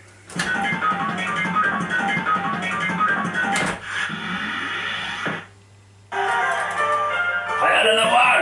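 Golden Dragon fruit machine playing its electronic jingles: runs of quick beeping notes, a brief gap about five and a half seconds in, then another tune.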